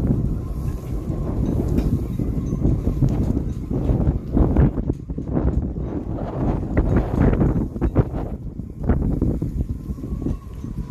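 Wind buffeting the microphone: a gusty low rumble that swells and drops unevenly.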